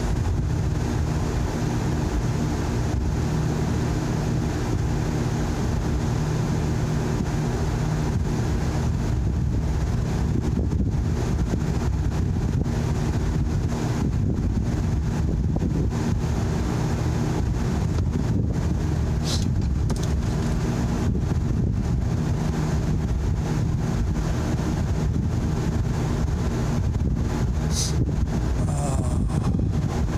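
Steady low rumble and hum inside a stopped vehicle's cabin, its engine idling, with a couple of brief ticks near the end.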